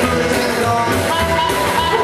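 Live rockabilly band playing, with electric and acoustic guitars, drums and a singer.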